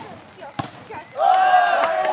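A football struck with a single thud about half a second in, then a man's loud, drawn-out shout starting just after a second in.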